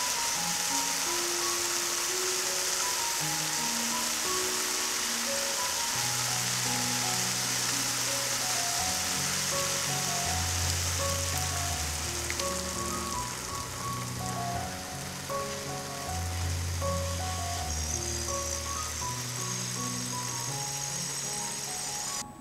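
Cabbage and vegetables frying in a pan, sizzling with a steady hiss, under background music with sustained notes and a bass line.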